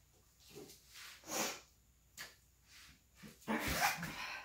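A series of short, breathy puffs of air, about six of them at uneven intervals, the loudest a little over a second in and a longer run near the end.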